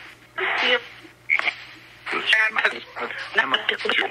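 Spirit box app on a phone's speaker playing chopped fragments of recorded speech and phonemes in short, broken bursts with gaps between them, over a steady low hum.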